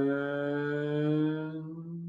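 A man's voice chanting one long held tone, slowly rising in pitch and fading near the end.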